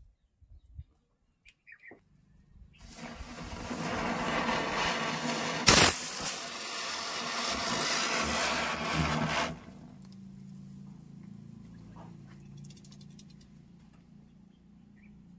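Diwali firecrackers going off: a spark-spraying cracker hisses loudly for about seven seconds, with one sharp bang about midway. Before it, a few faint crackles from the burning matchstick chain.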